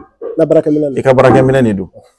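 Speech: a man talking in a low voice, one continuous phrase that stops just before the end.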